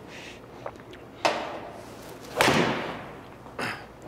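A PXG 0317 ST forged blade eight iron strikes a golf ball off a hitting mat, and the ball smacks into the simulator's impact screen. This is one sharp crack with a short ringing tail, the loudest sound, about two and a half seconds in. A lighter sharp knock comes about a second in.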